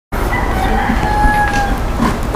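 A rooster crowing once, a drawn-out call about a second long that falls slightly at the end, over a steady low rumble of machinery with a few faint clanks.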